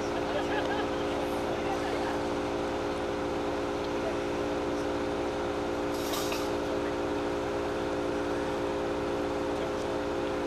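A steady hum of several fixed tones, unchanging throughout, under faint chatter of voices; a brief hiss about six seconds in.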